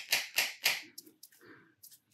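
Wooden brush handle tapping a small plastic Brusho crystal pot held upside down, about five quick taps a second, slowing to a few scattered taps and stopping. The taps are meant to shake the colour crystals out through the lid's small holes.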